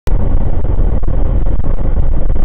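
A car driving at road speed, heard through a dashcam's microphone: a loud, steady rumble of road and wind noise, with small irregular ticks and rattles.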